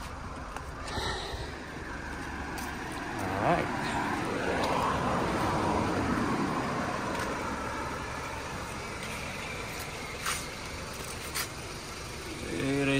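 BMW E90 318i four-cylinder petrol engine idling steadily, with a broad swell of passing noise midway and a few sharp clicks.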